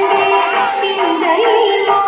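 Song for a Thiruvathira circle dance: female voices singing a slow melody with held notes that bend between pitches, over instrumental backing.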